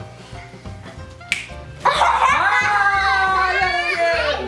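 Background music with a steady bass line, a single sharp clap or smack about a second in, then children squealing with excitement from about halfway, a high cry held for about two seconds.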